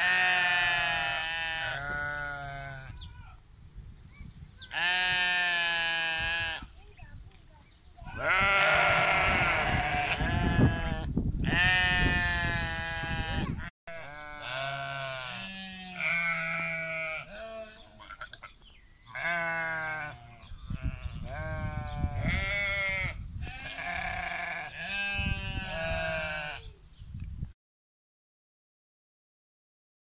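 Harri sheep bleating over and over, one long wavering call after another from several ewes at different pitches, with short pauses between calls.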